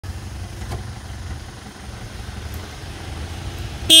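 Car engine idling with a steady low rumble, heard from inside the car. A short, loud pitched burst cuts in right at the end.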